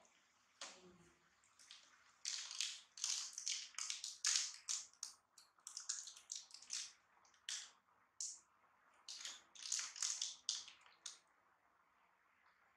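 Baby macaques chewing and smacking on dried fruit: a run of irregular, crisp wet clicks and crackles close to the microphone, starting about two seconds in and stopping near the end.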